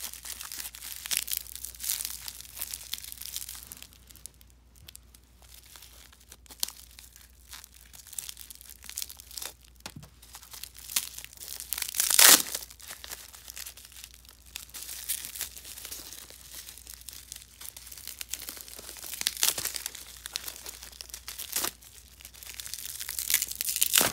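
Green plastic bubble wrap being pulled and peeled off a small diecast car: irregular crinkling and tearing of plastic, with one louder crackle about halfway through and more bursts near the end.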